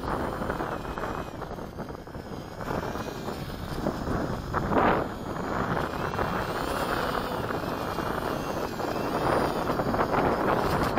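Wind buffeting the microphone in gusts, the strongest about five seconds in, over the faint whine of the Ultrix 600s RC aircraft's motors rising and falling in pitch.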